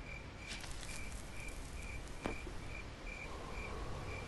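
A cricket chirping in a steady rhythm, about two short high chirps a second, over a faint low hum. A single sharp click comes a little past two seconds in.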